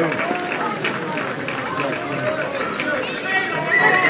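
Many overlapping voices of people at a football match, talking and calling out at once, with no single clear speaker. A few sharp clicks come through, and the voices grow louder near the end.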